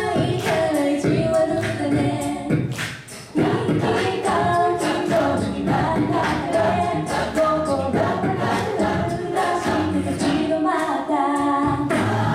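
A large mixed-voice a cappella choir singing in harmony, breaking off briefly about three seconds in and then coming back in together.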